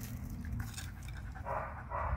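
Wolfdog giving a brief, rough vocalization about one and a half seconds in, during face-to-face play-mouthing with another wolfdog.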